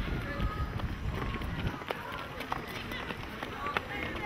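Footsteps of a group of schoolchildren walking and running on dry dirt ground, with scattered children's voices.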